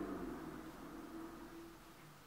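Faint, steady hiss of a quiet room, fading slightly toward the end.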